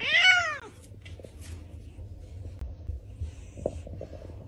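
A grey cat gives one loud, drawn-out meow that rises and then falls in pitch and sounds like "out!". It comes right at the start, with a low rumble running underneath.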